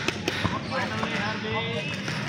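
A couple of sharp thuds in the first half second as a football is kicked and bounces on artificial turf, with players' distant shouts across the pitch.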